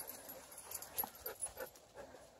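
A dog making a few short, faint sounds in quick succession, the loudest about a second in.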